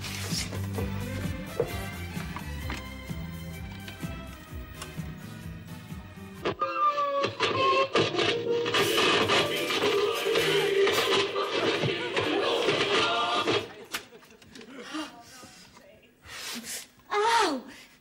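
Music from a vinyl record playing. It opens with a bass-heavy passage, then about six seconds in a voice comes in louder over the music until about fourteen seconds in, after which it drops low, with a short falling vocal sound near the end.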